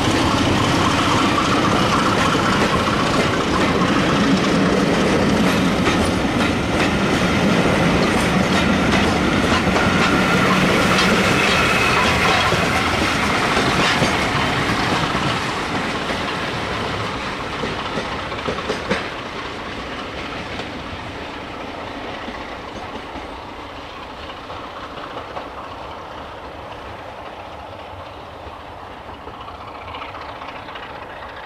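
A passenger train's coaches rolling past close by with a steady rumble and rattle of wheels on rail, then fading away from about halfway through as the train draws off into the distance, with a few sharp clicks about two-thirds of the way in.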